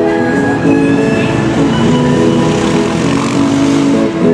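Street musician's harmonica and acoustic guitar playing on, while the rush of a passing car swells over the music past the middle and fades near the end.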